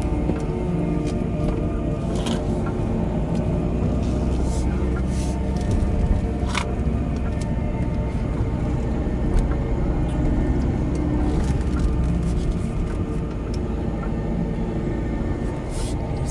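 A steady low rumble of road and engine noise from inside a moving car, with music playing throughout.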